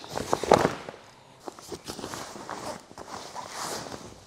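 Soft-shell rooftop tent travel cover being lifted off and handled. There is a cluster of knocks about half a second in, then fabric rustling.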